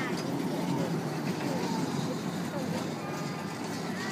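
A children's car ride running, its small jeeps circling the track with a steady rumble, under the faint chatter and calls of a crowd.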